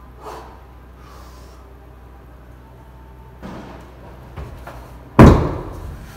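A 60 kg sand-filled beer keg, dropped from a failed overhead press, hits the gym floor with one heavy thud about five seconds in, hard enough to damage the floor. Fainter knocks come a second or two before it.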